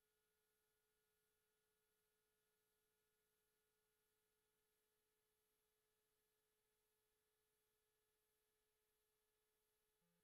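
Near silence: only a faint, steady electronic tone far below hearing level.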